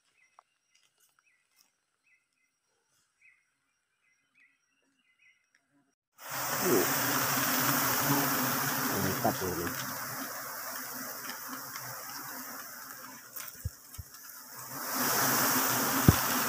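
Near silence for about six seconds, then a sudden, loud, dense buzzing of a disturbed giant honeybee (Apis dorsata) swarm close to the microphone, mixed with rustling noise. It eases off a little and swells again near the end.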